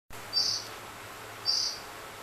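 Two short, high-pitched chirps about a second apart, part of a regular repeating series, over a faint steady low hum.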